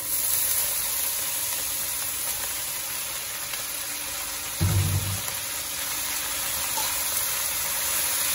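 Freshly washed kangkong (water spinach) dropped into a hot wok of oil with sautéed onion and shrimp paste, sizzling steadily, with a brief low thump about halfway through.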